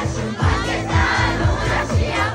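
Crowd of young people singing along to an amplified pop song with a steady drum beat.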